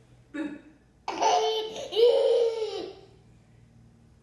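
A toddler laughing: a short sound just after the start, then a loud, high-pitched two-part burst lasting about two seconds.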